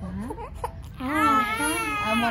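Young infant crying during tummy time: a few short whimpers, then a sustained fussy wail that starts about a second in.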